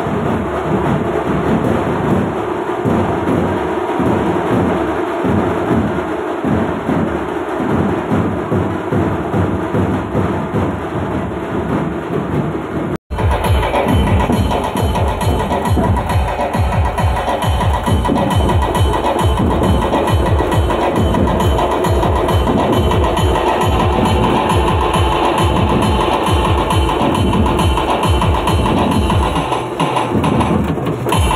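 Loud percussion-heavy music with a steady, driving drum beat. It drops out for an instant about 13 seconds in and comes back louder, with faster beats.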